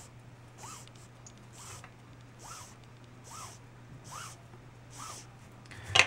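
Nylon paracord drawn hand over hand through the fingers as it is measured out: a short rubbing swish a little more than once a second, each with a brief squeak.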